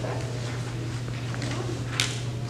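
Hall room tone: a steady low hum, with faint paper handling and a sharp click right at the end.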